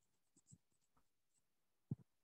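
Near silence with a few faint clicks, and one short low knock near the end.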